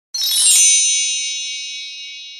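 Intro sound effect: a bright, high shimmering chime that swells over the first half second, then rings on and slowly fades.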